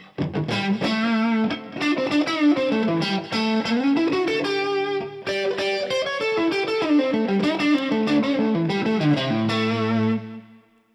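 Electric guitar played through the Origin Effects RevivalTREM pedal's overdrive with the drive turned up, giving a gritty, fat blues tone voiced after a brown Fender Deluxe amp. It plays a quick picked blues lead with a rising string bend near the middle, ending on a note left ringing.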